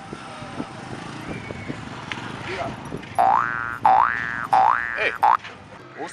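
A comic "boing" sound effect, three rising springy sweeps in quick succession and a short fourth, starting about three seconds in, over faint street background.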